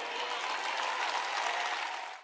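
Audience applauding, a steady even clapping.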